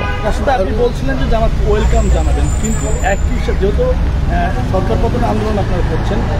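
Low, steady rumble of road traffic, a motor vehicle running close by, loudest about two seconds in, under the voices of people talking.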